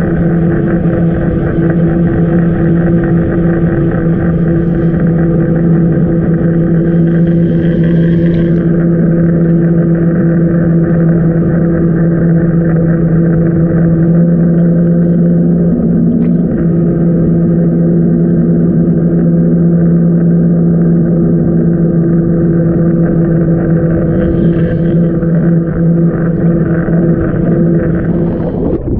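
Speedboat engine running steadily at trolling speed, a constant low droning hum with overtones, heard muffled underwater.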